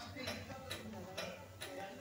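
Wooden spatula scraping and tapping against a nonstick pot while stirring a dry, crumbly flour mixture, faint strokes about twice a second.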